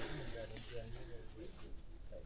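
Quiet talking, words not made out.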